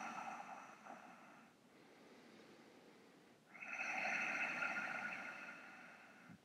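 Slow, audible yogic breathing through a narrowed throat (ujjayi breath). A long breath fades out about a second and a half in, and after a pause a second long breath comes in about halfway and lasts a couple of seconds. Both are faint.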